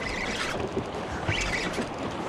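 Spinning reel being cranked against a fish on the line, with a few faint high squeaks, over a steady rush of wind and water.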